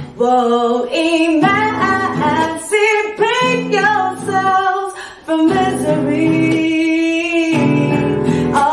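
A woman singing while strumming a nylon-string classical guitar, her voice moving between notes with several long held notes.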